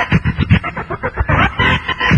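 DJ turntable scratching: a record is pushed back and forth under the needle, cut into rapid short stutters in the first half and then dragged in longer sliding strokes.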